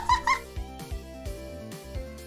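Background music with soft held and plucked notes over a steady low beat. A brief high voice sound rises at the very start.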